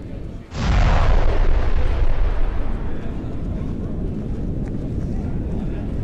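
A sudden deep rumble of collapsing rock about half a second in, heaviest in the low end, slowly dying away: a film's cave-in sound effect.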